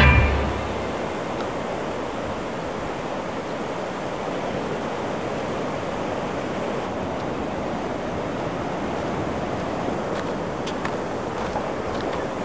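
Steady rushing ambient noise, an even wash with no clear events. The tail of a rock music track fades out in the first second, and a few faint clicks come near the end.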